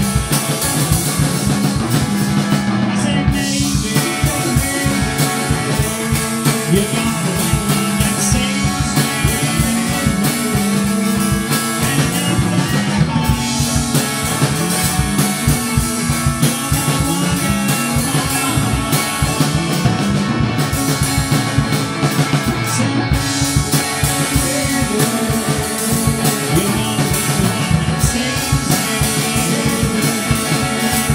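Loud rock music with guitar and a drum kit keeping a steady beat.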